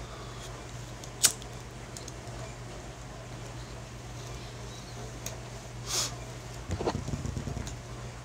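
Someone taking a hit from a small hand pipe: a sharp click about a second in, a breath about six seconds in, then a short run of rapid crackling, over a steady low hum.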